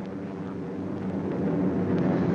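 Steady drone of heavy bombers' piston engines, several tones together, growing slightly louder toward the end.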